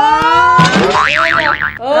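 Cartoon-style comedy sound effect: a rising slide-whistle-like tone, then a fast wobbling 'boing', as a long chain of sticky notes is pulled up out of the box. A voice exclaims 'Oh!' near the end.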